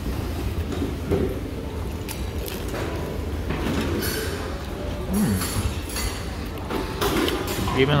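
Restaurant dining-room background: indistinct chatter of other diners over a steady low hum, with a few light clicks.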